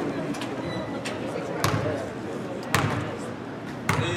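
A basketball bounced three times on a hardwood gym floor, about a second apart: a shooter's dribbles at the free-throw line before a free throw.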